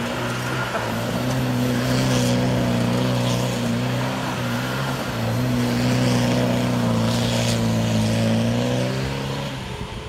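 A Land Rover Defender's 300Tdi four-cylinder turbodiesel held at high revs as the truck spins circles on loose gravel, with a hiss of gravel and dirt spraying from the spinning tyres. The engine note stays steady, dips briefly about halfway, and falls away near the end.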